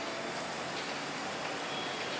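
Steady, even background noise with no distinct event: the faint hiss and hum of the open-air surroundings picked up by the microphone.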